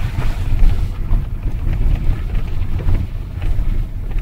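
Low, steady rumble inside a Volkswagen car's cabin: engine and tyres as the car rolls slowly along a rough track, coasting with the throttle released.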